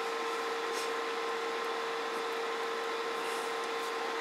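Steady background hum and hiss of powered electronic test bench equipment, with one constant mid-pitched tone running under it.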